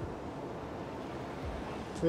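Steady city street ambience outdoors: an even, low rush of background noise with no distinct events.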